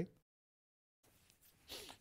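Near silence: the sound cuts out completely for most of a second, then faint studio room tone with a soft breathy noise that swells near the end.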